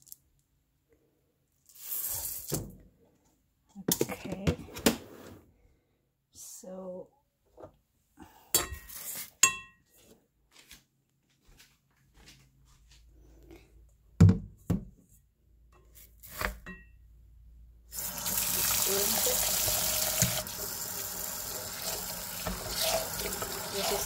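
Scattered taps, scrapes and knocks from a plastic rice paddle and the rice cooker's inner pot being handled, the loudest a sharp knock a little past the middle. About three-quarters of the way through, a kitchen tap starts running water steadily into the pot of rice in the sink, rinsing the rice.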